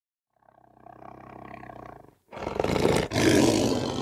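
Lion roaring: a quieter low growl builds from about half a second in, then a much louder roar starts just past two seconds, with a short break near three seconds.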